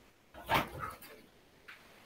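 A single short animal call, about half a second long, a little after the start, followed by a faint click.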